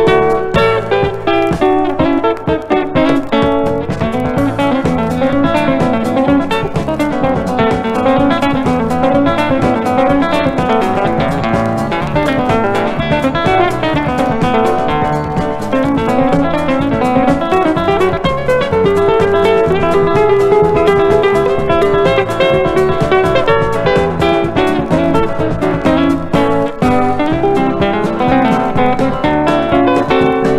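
Country guitar instrumental, a fast-picked lead guitar over a steady backing, with no singing.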